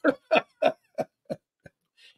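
A man laughing: about six short 'ha' pulses, roughly three a second, fading away.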